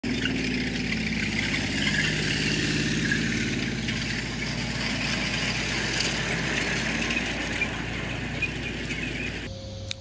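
WWII tracked light tanks, among them an M5A1 Stuart, driving on gravel: engines running steadily under the clatter of the tracks. The sound cuts off abruptly near the end.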